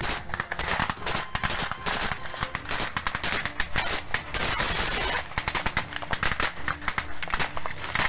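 Small-arms gunfire: a rapid, irregular run of sharp cracks, with a dense rush of noise lasting about a second about halfway through.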